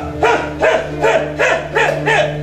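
Sustained background music, over which a voice gives short calls that rise and fall in pitch, about two a second.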